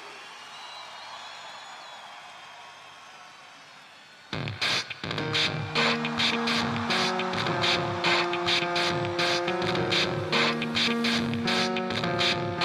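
A rock band starts a song live. After about four seconds of quieter low noise, a quick, even drum beat and held keyboard chords come in suddenly.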